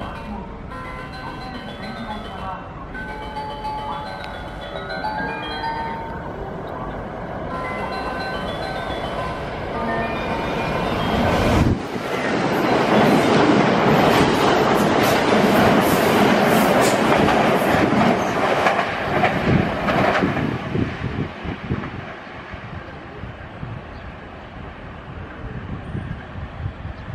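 JR limited express electric train passing through the station at speed without stopping. Its rush of wheel and air noise rises sharply about twelve seconds in, stays loud for about eight seconds, then fades.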